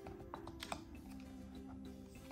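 Quiet background music with steady held notes, over a few light clicks and taps of a thick cardboard flap in a board book being lifted by hand, the sharpest click about three-quarters of a second in.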